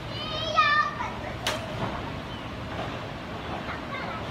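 A child's high voice calling out briefly near the start, then one sharp click about a second and a half in, over a steady low background hum.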